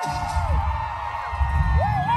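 Concert crowd cheering, with a couple of high rising-and-falling whoops near the end over a steady low bass rumble from the venue.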